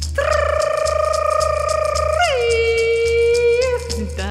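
A woman's voice holds a long wordless chanted note with vibrato, stepping down in pitch about halfway and holding again. Under it a shamanic hand rattle shakes in an even rhythm and a frame drum beats low.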